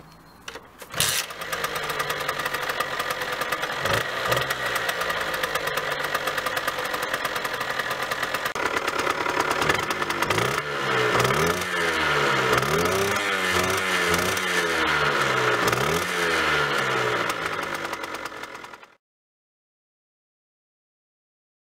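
A 50cc two-stroke crossmoped engine is started about a second in and idles. From about halfway through it is revved repeatedly, its pitch rising and falling with each blip. The exhaust still has its restrictor plug fitted, so this is the restricted sound. The sound cuts off abruptly about a second before the end.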